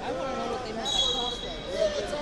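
Several voices overlapping in a large hall during a wrestling bout. About a second in, a brief high steady tone sounds for under a second.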